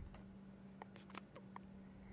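Near silence: quiet room tone with a faint steady hum and a few faint short clicks about a second in.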